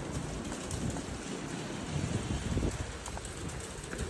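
Steady hiss of light rain on a wet street, with wind rumbling on the phone's microphone.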